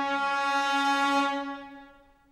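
Chamber orchestra holding one sustained final note, rich in overtones, which fades away over the last half second.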